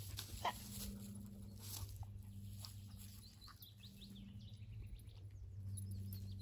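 Faint bird chirps from about three and a half to five seconds in, with scattered rustling in dry leaves and a steady low hum underneath.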